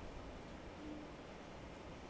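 Quiet room tone with a low hum, in a pause between a man's words.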